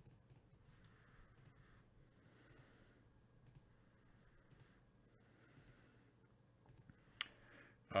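Computer mouse button clicking, faint single clicks every second or so, the loudest about seven seconds in, over a faint low hum.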